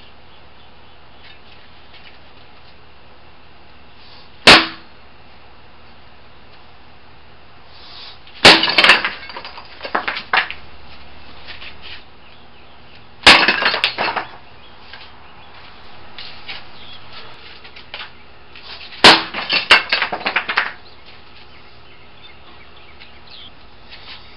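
Hand strikes on pieces of concrete patio slab set across concrete blocks: four sharp cracks, the last three each followed by a second or two of broken fragments clattering and scraping on the blocks.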